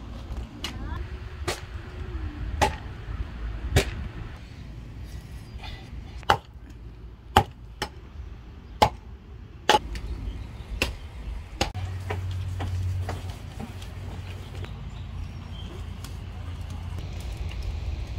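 Dry wood cracking and snapping: a series of sharp cracks, roughly one a second, over the first twelve seconds, followed by a steady low rumble.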